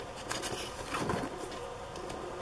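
Page of a spiral-bound paper smash book being turned, a faint paper rustle over a steady low hum.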